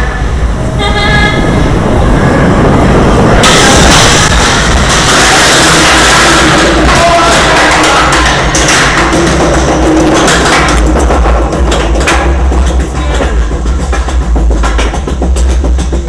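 Arrow Dynamics looping coaster train in motion, heard from the front seat: a loud, dense rumble of wheels on track through a tunnel, then a rapid, evenly spaced clacking in the second half as the train heads uphill.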